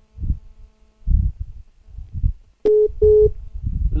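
A phone call over the studio line with muffled low thumps and rumbles, then two short beeps of a steady telephone tone as the call drops.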